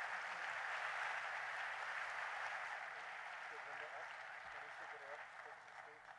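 Audience applauding, the clapping fading away gradually.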